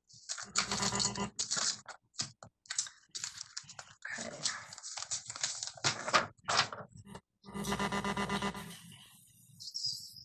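Sheets of paper rustling and being shuffled close to the microphone, heard over a video-call link, in irregular bursts with a longer stretch a little before the end.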